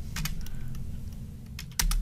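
Computer keyboard typing: a handful of separate keystrokes early on, then a quick run of keys near the end, over a low steady hum.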